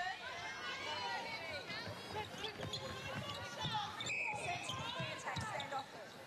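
Court shoes squeaking and feet thudding on a hardwood netball court during play, over the murmur of the arena crowd and players' voices. A short whistle blast sounds about four seconds in.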